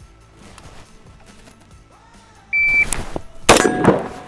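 A shot timer beeps once, and just under a second later a single shot is fired from an AR-style carbine, the loudest sound here, with a brief ringing tail. The interval is the shooter's draw-to-shot time, read out as 0.97 seconds.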